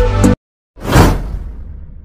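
Background music cuts off abruptly a third of a second in; after a short silence a whoosh sound effect swells and fades away, the kind that opens an animated subscribe-button graphic.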